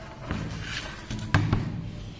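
A handheld power bank being handled and set down on a wooden tabletop: a soft knock, then two sharp knocks close together about one and a half seconds in.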